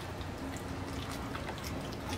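A steel spoon stirring a thick batter of jowar flour and semolina in a glass bowl: faint wet stirring with a few light ticks.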